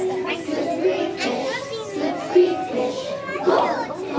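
A group of young children's voices singing together, with some held notes and a mix of voices not quite in unison.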